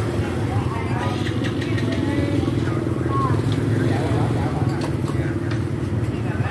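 A small engine running steadily close by, a low even rumble, with people's voices chattering over it.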